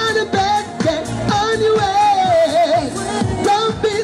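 A singer singing a pop song live into a handheld microphone over backing music, with long held notes that waver and bend in pitch.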